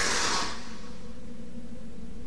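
A cartoon soundtrack's rushing, hissing sound effect fading away in the first half second, followed by a low steady hum.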